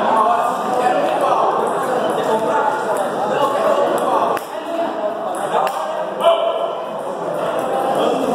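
Table tennis ball clicking off bats and the table in play, with a few sharp knocks, the loudest about six seconds in, over background chatter.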